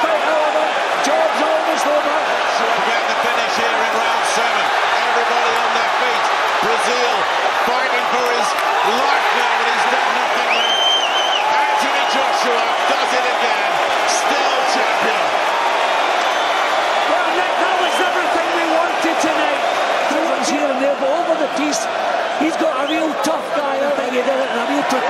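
Large arena crowd cheering and shouting without a break, many voices at once, in celebration of a heavyweight knockout. A brief high whistle cuts through about ten seconds in.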